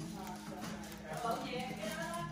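Faint voices in the background over a steady low hum, with a few light clicks.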